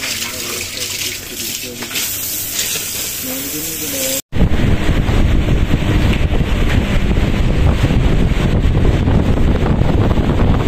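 A steady hiss like water running or gushing. An abrupt cut about four seconds in brings a louder, low, fluttering rumble of wind buffeting the microphone.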